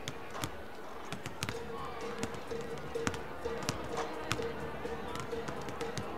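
Basketballs bouncing on a gym's hardwood floor in irregular, overlapping thuds, over indistinct crowd chatter. Music over the gym's speakers comes in about a second and a half in.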